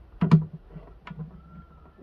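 Hard plastic lid clacking against the rim of an Airhead composting toilet's plastic solids bin as it is lined up to seat: two sharp clacks about a quarter second in, then a few lighter taps.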